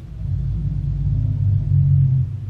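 A loud, low rumble with a steady droning hum in it, swelling in just after the start and then holding steady.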